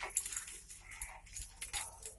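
Light clicks of plastic counting blocks being picked up and moved by hand.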